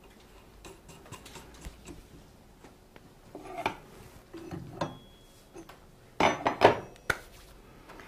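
Metal parts of a grinding machine being handled: scattered light clicks and clinks as the wheel and the nipper holder are fitted, with a louder clatter of knocks about six seconds in.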